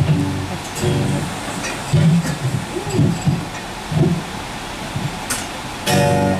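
Acoustic guitar chord strummed and left ringing about a second in, then a low voice murmuring, with another chord at the very end.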